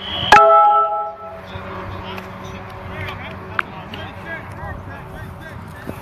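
A sharp knock followed by a brief ringing tone that dies away within about a second, then faint voices and shouts from the players on the field.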